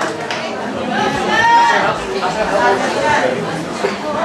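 Voices talking over one another in a large hall: speech and audience chatter.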